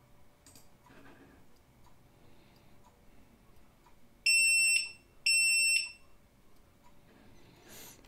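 Two short, high-pitched electronic beeps about a second apart from the Xhorse VVDI Multi-Prog programmer's buzzer, marking the end of a read operation on the Kessy module's MCU.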